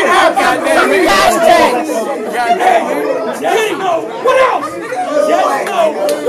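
Several men talking and calling out over one another at once: loud crowd chatter in a large room.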